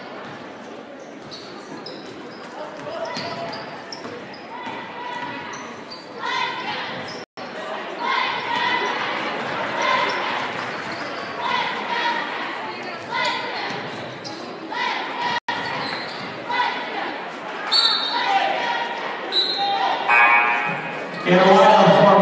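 Basketball dribbled and bouncing on a hardwood gym court during play, with crowd voices echoing in a large gym. A louder voice rises near the end.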